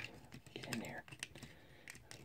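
Faint, irregular clicks and scrapes of hard plastic as the Laserbeak cassette figure is pushed into Soundblaster's chest compartment, a tight fit.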